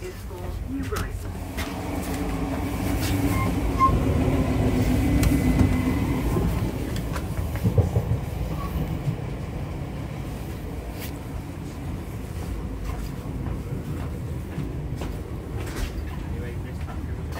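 Carriage interior of a Merseyrail Class 508 electric multiple unit on the move: a steady low rumble of wheels on the track with a hum that swells over the first few seconds and eases after about six, and a few scattered clicks.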